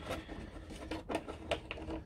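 Small plastic action-figure accessories being handled and picked out of a hard plastic blister tray by hand: a string of light, irregular clicks and taps.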